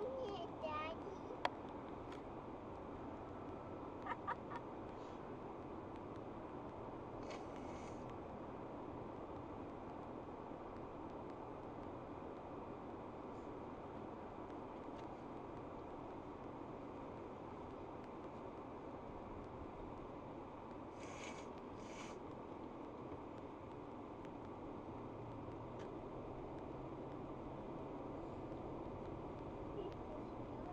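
Steady road and engine noise inside a moving car's cabin, picked up by a dashcam. A few short higher sounds stand out: a brief hiss about 7 seconds in and two more a little past the 20-second mark.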